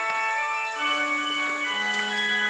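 Organ playing slow held chords, with notes changing about every second.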